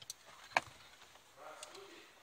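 A single sharp click about half a second in, with faint, low speech near the end.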